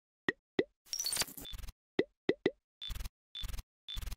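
Logo sting sound effect: a string of about eight short, separate plops and pops, several dropping quickly in pitch, with a brief high twinkle about a second in.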